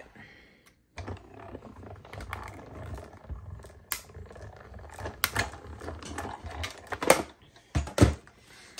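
Die-cutting machine rolling a cutting-plate sandwich with thin metal dies through its rollers, cutting out stamped cardstock pieces. A low rumble with scattered clicks and crackles starts about a second in and lasts about six seconds.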